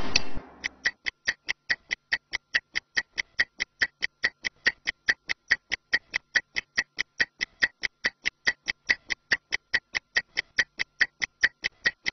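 Stopwatch ticking steadily, about five sharp ticks a second, timing a 30-second recovery break. The ticking starts just under a second in, right after a tail of music cuts off.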